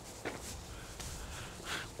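Faint footsteps on a paved yard over quiet outdoor background noise.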